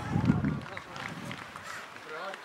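Indistinct voices of players and spectators calling and chatting around a football pitch, with a brief low rumble in the first half-second.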